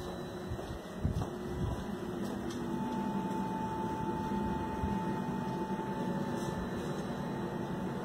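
Steady mechanical hum of a building's ventilation or equipment heard indoors through a phone microphone, with a few low handling thumps about a second in and a thin steady tone from about three seconds in.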